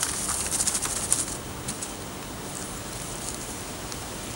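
Paper raffle tickets rustling and crinkling as they are handled, a quick run of small crackles in the first couple of seconds, then only a faint steady hiss.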